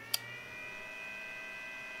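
High-pitched electronic whine of several steady tones, like coil whine from power electronics, rising in pitch at first and levelling off about half a second in. A single sharp click sounds just after the start.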